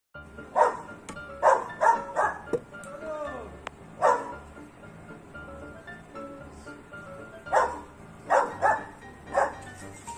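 A dog barking at a cow in about nine sharp single barks, bunched in quick clusters with a pause in the middle, over steady background music.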